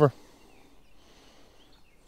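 Quiet outdoor garden ambience with a few faint, distant bird chirps.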